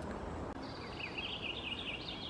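A bird chirping a quick run of short high notes, starting about half a second in, over faint outdoor background noise.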